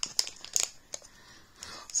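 Packaging crinkling as it is handled, with a few short, sharp crackles.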